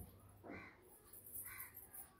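A bird calling twice, faintly, about a second apart.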